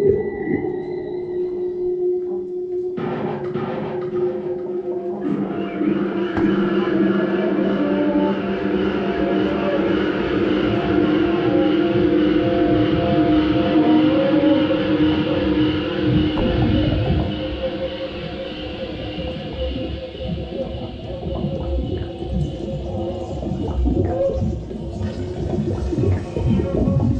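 Improvised experimental music: a trombone sounding long held notes over layered droning electronics, with a grainy crackle underneath in the second half.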